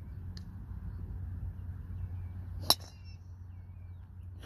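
Driver clubhead striking a teed golf ball in a full swing: one sharp crack with a brief high metallic ring, about two and a half seconds in.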